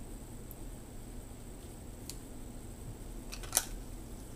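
Quiet room tone with a steady low hum and a few faint, sharp clicks, the loudest just before the end.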